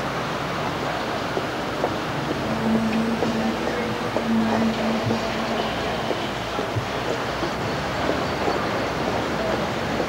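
City street ambience: a steady wash of traffic noise. A low steady hum sits over it for about three seconds in the middle.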